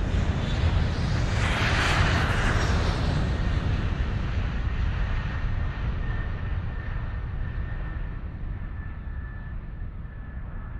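Jet airliner engine noise: a deep steady rumble that builds to a peak about two seconds in and then slowly dies away, with a faint thin whine in the second half.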